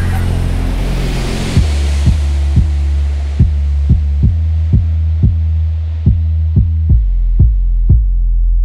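A bass-heavy hip-hop beat made in FL Studio, built on a loud sustained bassline. About one and a half seconds in, low drum hits come in at about two a second while the higher sounds fade away.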